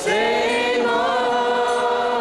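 A group of voices singing a Vaishnava devotional chant together in unison, with long held notes starting suddenly.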